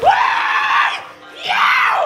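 Loud screaming: two long, high yells, the second starting about a second and a half in.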